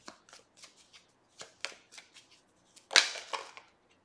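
Tarot cards being shuffled and handled: a run of light card flicks and slaps, with a louder flurry about three seconds in.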